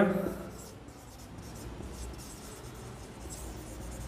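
Marker pen writing on a whiteboard: faint, scratchy strokes of the felt tip as a word is written out.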